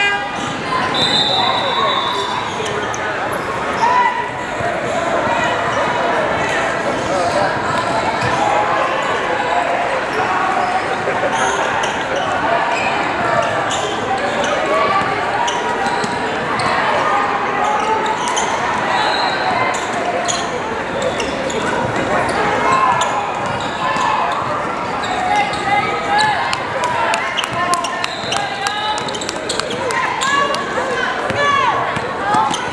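Basketball game sounds in a large echoing hall: overlapping voices of players and spectators with basketballs bouncing on the hardwood court, the bounces coming thicker near the end.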